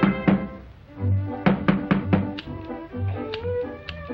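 Two sharp knocks on a wooden door at the very start, then the cartoon's band score carries on: a pulsing bass line with a series of short, sharp percussive hits.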